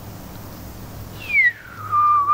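A person whistling through pursed lips to imitate a slide whistle: about a second in, a high note slides quickly down and settles into a lower held note.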